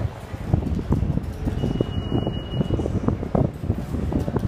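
Footsteps and handling rumble from a handheld camera carried at walking pace, a quick irregular run of low knocks over a wind-like rumble on the microphone. A faint high steady tone sounds for about a second near the middle.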